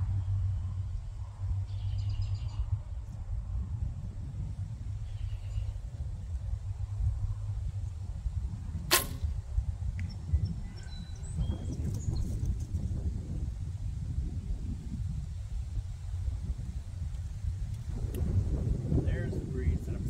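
A single shot from a barebow recurve (Gillo GT riser, Win & Win NS-G limbs): the string is released once with a sharp snap about nine seconds in, over a steady low wind rumble on the microphone.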